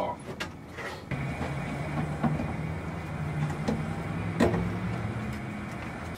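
A steady low mechanical hum, starting abruptly about a second in and cutting off at the end, with a few light clicks and knocks over it.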